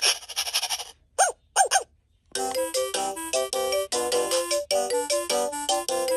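VTech Rattle and Sing Puppy baby toy playing from its small speaker: a short noisy burst, then two brief rising-and-falling voice calls. After a short pause it plays a bright, beeping electronic tune.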